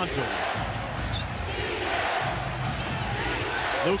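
A basketball is dribbled repeatedly on a hardwood court over steady arena crowd noise.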